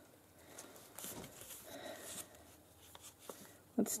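Faint rustling of paper and envelopes being handled, with a few soft clicks.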